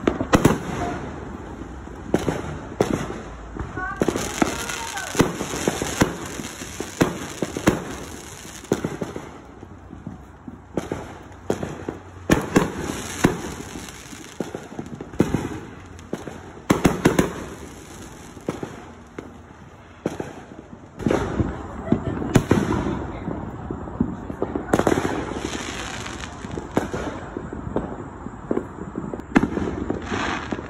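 Aerial fireworks going off in the neighbourhood: many sharp bangs and pops at irregular intervals, some coming in quick clusters.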